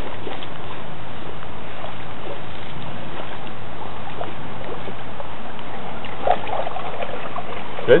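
Steady hiss of rain falling on shallow water, with faint scattered drop ticks.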